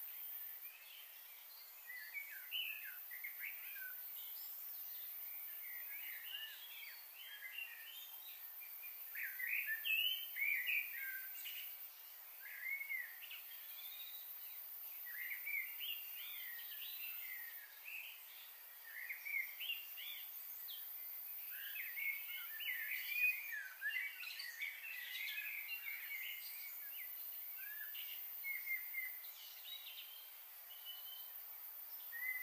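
Small songbirds chirping and calling, many short high chirps overlapping without a break, in busier spells about ten seconds in and again past twenty seconds, over a faint steady hiss.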